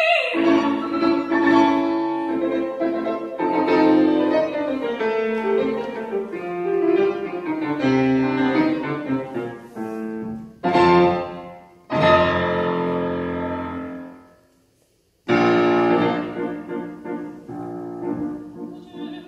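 Grand piano playing a solo passage of an opera aria accompaniment while the soprano is silent. Past the middle come two loud struck chords, then a chord left to ring away into a moment of silence before the playing starts again with another loud chord.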